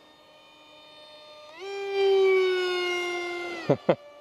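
Electric brushless motor and small prop of an RC park jet. It runs with a faint whine, then is throttled up about a second and a half in to a loud high whine that slowly sags in pitch. Near the end it drops away steeply twice as the plane goes through a split S.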